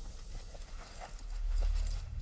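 Footsteps clicking on a hard floor, a handful of steps, over a low steady rumble that swells about three quarters of the way through.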